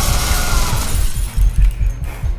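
Glass bottles and drinking glasses from a bar shelf shattering and tinkling, the breaking fading out about a second in. Under it runs loud action-film music with a heavy pounding bass.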